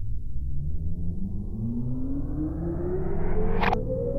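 Instrumental intro of a rap beat: a deep bass rumble with a tone that rises steadily in pitch while the sound grows brighter, like a riser or filter sweep. There is a short sharp hit near the end.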